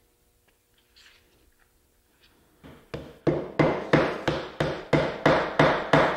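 A mallet tapping quarter-inch wooden dowels into holes drilled through a glued stack of form pieces, so the pieces stay aligned while the glue sets. After a quiet first half come quick, even taps, about three a second.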